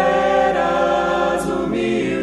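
A group of voices singing a hymn in Portuguese in harmony, holding long notes that change pitch about half a second in and again near the end.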